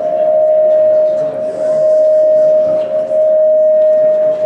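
A loud, steady single-pitch tone from the hall's PA system, typical of microphone feedback ringing through the house speakers, holding one pitch without change, with faint voices beneath.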